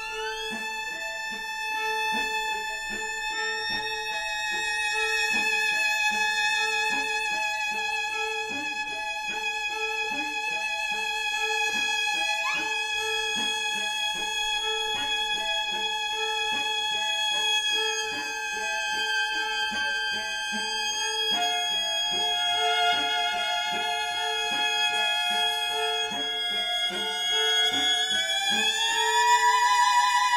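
String quartet playing contemporary chamber music: high held violin notes that slide upward at the start, again briefly about twelve seconds in, and once more near the end, over a short lower note that repeats at an even pulse. The music swells slightly near the end.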